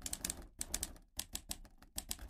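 Typing sound effect laid over on-screen text: a quick, irregular run of sharp key clicks, about four or five a second.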